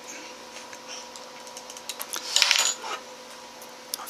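Light metallic clicks and clinks from the lamp's metal fittings and small hand tools being handled, with a short cluster of rattling clinks about two and a half seconds in.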